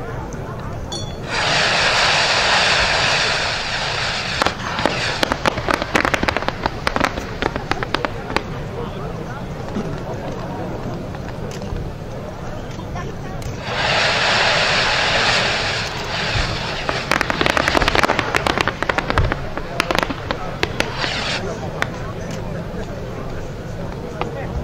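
Mass volley of many small fireworks rockets launching together with a dense rushing hiss that lasts a few seconds. Then comes a long run of rapid crackling and popping as their stars burst overhead. This happens twice.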